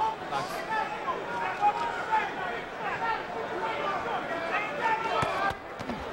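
Arena crowd voices, with shouts and chatter from ringside, during a heavyweight boxing bout. A few sharp knocks come near the end.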